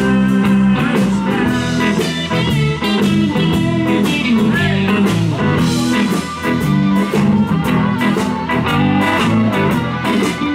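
Live blues band playing an instrumental passage: electric guitars over bass and drums, with a harmonica played into a handheld microphone wailing on top.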